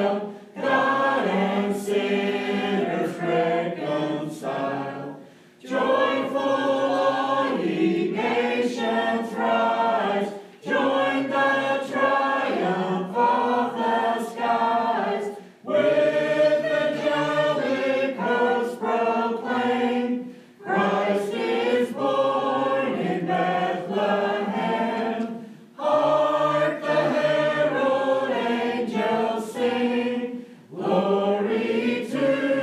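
Mixed church choir singing a hymn in parts, in phrases of about five seconds, each broken by a short breath.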